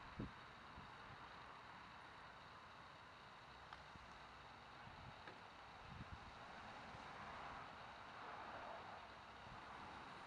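Near silence: faint outdoor hiss with light wind noise on the microphone.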